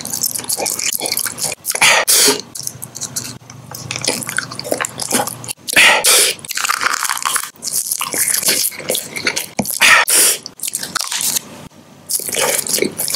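Close-miked biting and chewing of soft candy: wet mouth sounds and crisp bites in irregular bursts. About six seconds in, a plastic candy wrapper crinkles.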